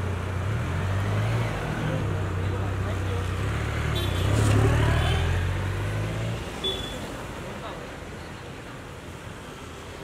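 Large motorcycle engine running with a deep, steady note, revving up as it pulls away about four seconds in, then fading out a little after six seconds as it rides off, leaving street traffic noise.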